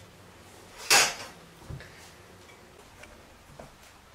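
A short, loud scrape about a second in, then a soft knock and a few faint ticks: tools and wood being handled.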